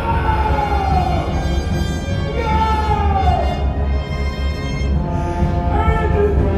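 Dark, dramatic orchestral stage music over a heavy, steady low rumble, with two long falling pitch glides, one in the first second and one about three seconds in.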